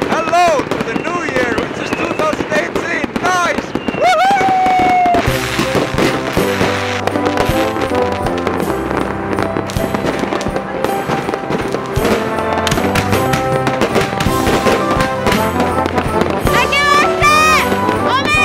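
Fireworks banging and crackling, with people shouting and cheering over them; about five seconds in, background music with steady bass notes comes in and plays on over the bangs.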